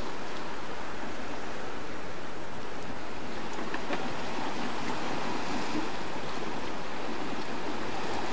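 Sea surf washing on a rocky shore: an even, steady hiss with no breaks or distinct impacts.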